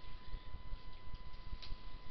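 Background room noise between words: an uneven low rumble with a faint steady high whine, and one faint tick about one and a half seconds in.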